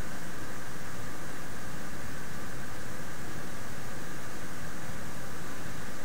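Steady hiss of background noise, even and unchanging, with no clicks or other events.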